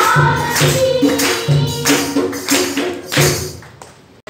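Live church worship music: held keyboard notes over a steady, quick percussion beat. It fades out near the end.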